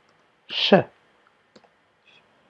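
A brief voice sound with a hiss, falling in pitch, about half a second in, followed by a few faint clicks of a computer keyboard as a word is typed.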